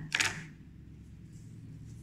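A brief rustle right at the start, then quiet room tone with a faint steady low hum.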